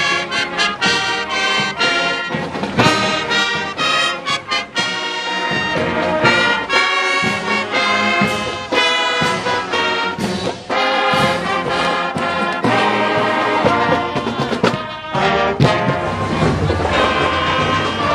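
Marching band brass, with trumpets, trombones and sousaphones, playing a tune together in a steady march rhythm.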